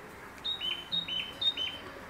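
A bird calling three times, about half a second apart, each call a short high note followed by a slightly lower note that drops away.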